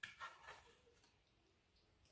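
Near silence, with a few faint soft clicks in the first half second as a page of a cardboard board book is turned.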